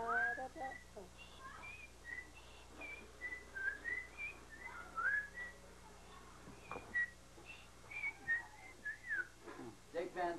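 A person whistling a tune in short separate notes, some sliding up in pitch.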